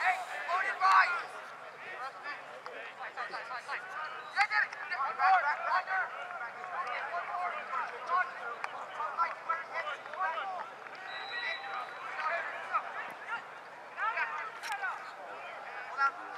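Overlapping, unintelligible shouts and calls from lacrosse players and sideline spectators, rising and falling throughout.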